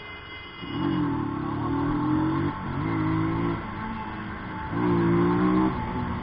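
Motorcycle engine accelerating under the rider, its pitch climbing in three pulls with short breaks between them as it is shifted up through the gears, over steady wind noise.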